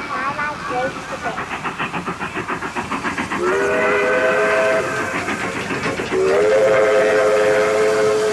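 Sampled steam locomotive chugging at about five beats a second. It is followed by two long steam-whistle blasts, each a chord of several tones that slides up into pitch, the first about three seconds in and the second about six seconds in.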